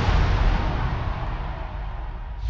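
A loud, deep boom-like rumble with hiss above it, fading slowly over about two seconds: a sound effect in a TV promo.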